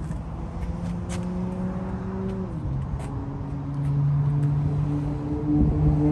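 A motor vehicle's engine hum from nearby road traffic over a low outdoor rumble. Its pitch drops about two and a half seconds in and it grows louder in the second half.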